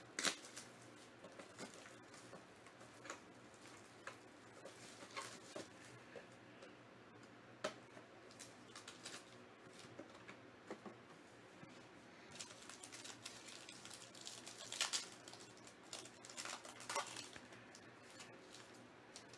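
Faint handling of a trading-card box and its foil pack: scattered light clicks and taps, then crinkling of the foil wrapper as it is torn open in the last few seconds.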